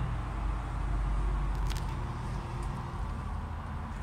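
Steady low rumble of outdoor urban background noise, with one faint click a little before halfway.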